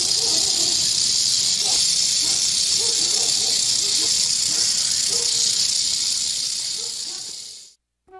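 A rattlesnake shaking its tail rattle: a loud, steady high-pitched buzz that fades out near the end.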